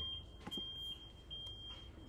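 A high-pitched electronic beep, one steady tone repeating in short pulses a little more than once a second.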